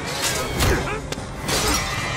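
Staged movie fight sound effects: a quick run of about four sharp hits and crashes with breaking, mixed with fighters' grunts.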